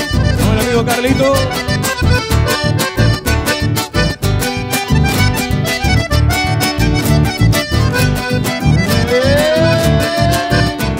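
Live band playing an instrumental passage led by accordion, with guitar and a steady beat. Near the end one note slides up and is held.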